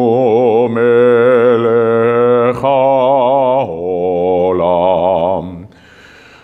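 A male cantor chanting a Hebrew blessing solo and unaccompanied, in long held notes ornamented with wavering vibrato and melismatic runs. He takes brief breaths between phrases and stops just before the end.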